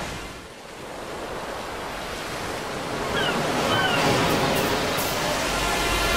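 A steady rushing noise like surf or wind that dips briefly near the start and then swells louder, with a few short high chirps about three seconds in.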